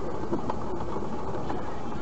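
An off-road 4x4 driving slowly on a dirt trail, heard from inside the cab: steady engine and drivetrain noise with a few light knocks and rattles.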